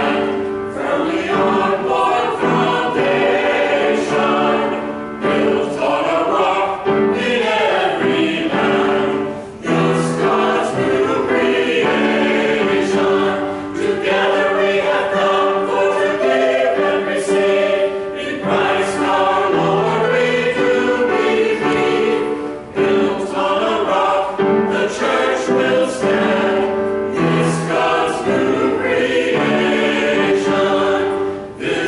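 A small church choir of mixed men's and women's voices singing together, with short breaks between phrases about ten seconds in and again a little past twenty seconds.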